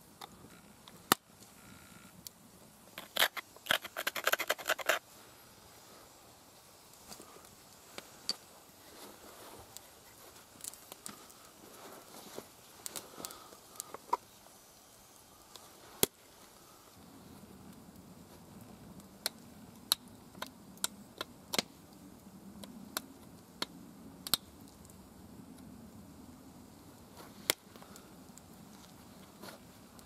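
Pressure flaking a small flint drill bit: sharp clicks as tiny flakes snap off the stone under a hand-held flaker. A rapid run of clicks comes about three to five seconds in, then single clicks every second or two.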